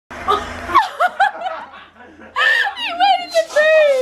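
A woman laughing hard, in high, drawn-out peals that are loudest in the last second and a half. A brief noisy rush comes right at the start.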